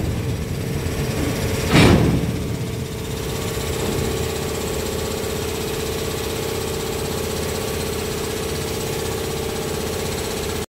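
Shunting locomotive's engine running steadily, with a steady mid-pitched tone. A brief, loud burst of noise comes about two seconds in.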